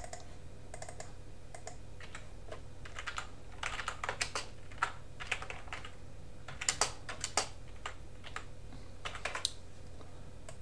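Computer keyboard being typed on: irregular clusters of short clicks, busiest in the middle and near the end, over a steady low electrical hum.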